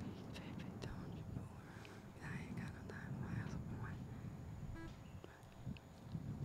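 Faint whispering under the breath, with a few light clicks over a low background hum.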